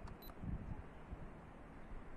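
A camera faintly clicks with a brief high-pitched beep shortly after the start as a picture is taken, over a low rumble of handling.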